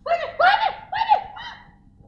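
A woman's high-pitched voice in four short syllables, each rising and falling in pitch, over a faint steady hum.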